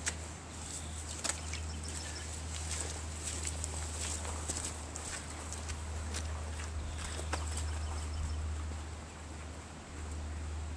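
Footsteps of rubber boots through wet grass and mud, moving away, with scattered light clicks over a steady low hum of outdoor background.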